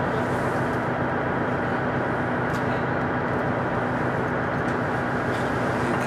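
KiHa 110-series diesel railcar engines idling at a standstill: a constant hum with a steady low tone, heard from inside a stopped carriage.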